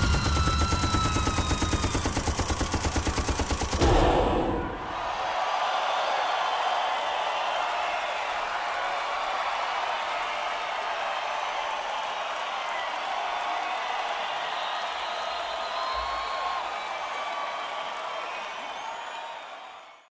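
A burst of rapid machine-gun fire, played as a stage sound effect, lasting about four seconds, then a large concert crowd cheering and screaming that fades out at the end.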